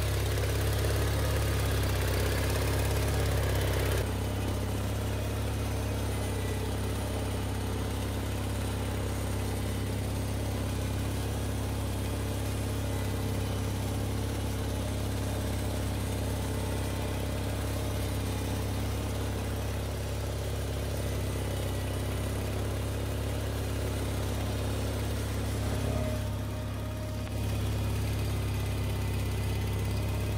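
Steiner 420 tractor engine running steadily, a little quieter from about four seconds in, with a brief dip in level near the end.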